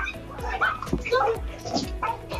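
Small dogs barking and yelping several times, over background music with a steady low beat.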